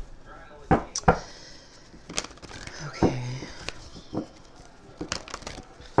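Tarot cards being handled and set on the table: a string of sharp taps and knocks with soft rustling of cards in between.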